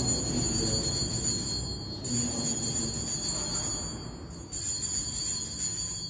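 Altar bells (a cluster of small sanctus bells) shaken in three rings, each a bright, high jingle lasting about two seconds, marking the elevation of the chalice at the consecration.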